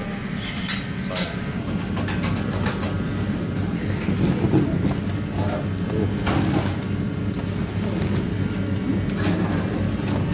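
A steady low hum of kitchen background noise, with muffled voices, and scattered clicks and scrapes as a pizza wheel is rolled across a pizza on a perforated metal pizza screen.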